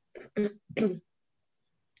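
A person clearing their throat in three short bursts within the first second.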